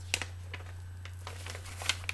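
Vinyl album jacket handled, with a short rustle of cardboard and paper about a tenth of a second in and another near the end, over a steady low hum.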